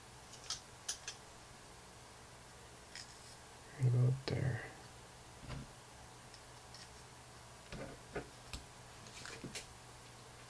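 Scattered light clicks and taps of carbon-fibre frame plates, screws and a screwdriver being handled during assembly, with a short vocal murmur about four seconds in.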